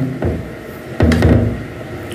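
A single sharp knock about a second into the pause, most likely something set down or struck at the dining table, followed by a faint low hum. A weaker low bump comes just before it.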